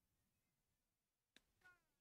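Near silence: the commentary feed is gated off between remarks. A faint click comes near the end, followed by a brief, faint voice-like sound.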